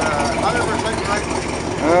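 A 1967 Chevrolet Corvette Stingray's big-block V8 idling steadily, an engine taken by ear for a 427.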